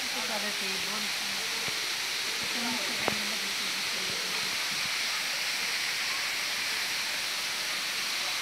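Steady rushing hiss of a waterfall, with faint voices of people talking under it and a single click about three seconds in.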